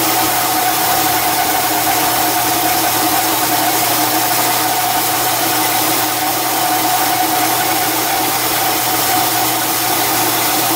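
Metal lathe running steadily with a large metal ring spinning in the chuck while a cut is taken, throwing metal chips: a constant machine hum with a steady whine over an even hiss.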